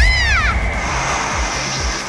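Cartoon action music with a swooping pitch sweep that rises and falls in the first half-second, then a steady bright shimmering hiss held over a low beat.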